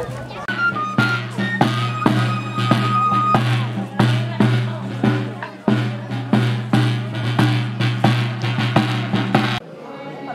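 Traditional pipe and drum: a tamborilero's small tabor drum (tamboril) beating steadily, about three strokes a second, under a high whistle-like pipe tune. It cuts off suddenly near the end.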